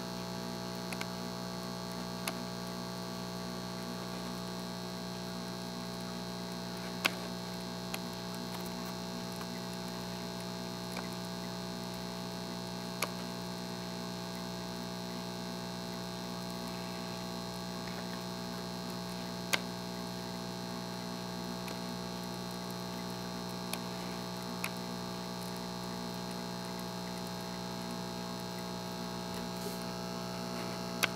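Steady electrical hum made of several fixed tones, with a few isolated sharp clicks scattered through it.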